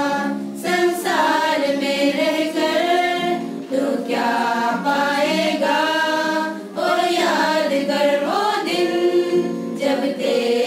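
A women's choir singing a hymn together, in phrases of about three seconds with brief breaths between them.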